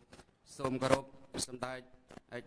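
A man speaking into a podium microphone, with short bursts of crisp rustling noise between his words.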